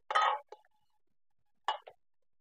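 A spatula scraping and clinking against the inside of an aluminium pressure cooker as potatoes, peas and tomatoes are stirred. There are two short bursts about a second and a half apart.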